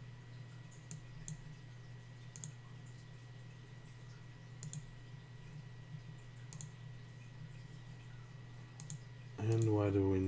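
Scattered single clicks of a computer mouse, about six of them spaced a second or more apart, over a steady low hum.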